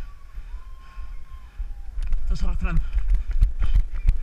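Running footsteps on asphalt and the jolting of a camera carried by the runner: a steady rhythm of low thuds, louder in the second half. A voice calls out briefly around the middle.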